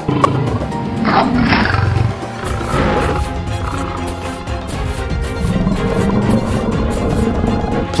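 Background music with big-cat roar sound effects, one about a second in and another around three seconds.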